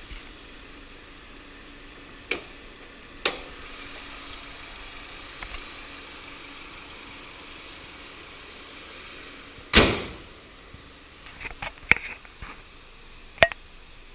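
A 2009 Jeep Patriot's hood being handled: a couple of sharp clicks as it is opened, then a loud slam about ten seconds in as it is dropped shut, followed by a few lighter clicks and knocks.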